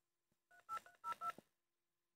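Touch-tone keypad beeps: about five quick two-note key presses, each with a click, starting about half a second in.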